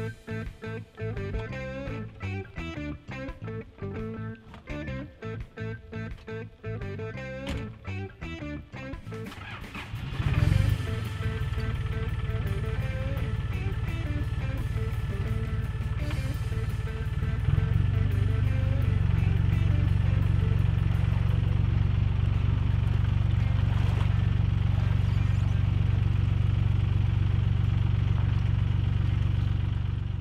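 Plucked guitar music for about the first ten seconds. About ten seconds in, a tractor engine starts and runs steadily under the music. It grows louder about seven seconds later and holds there.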